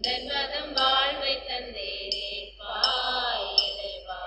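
A church hymn, singing with instrumental accompaniment, during the offertory of a Catholic Mass.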